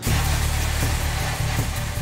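Commercial pre-rinse spray nozzle spraying water onto dishes in a rack: a steady hiss that starts abruptly, with background music underneath.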